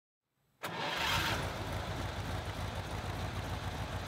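A car engine comes in abruptly about half a second in and runs with a steady low pulsing note.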